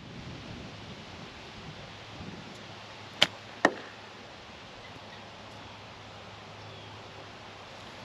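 An iron striking a golf ball, then about half a second later a second sharp crack as the ball hits a wooden utility pole.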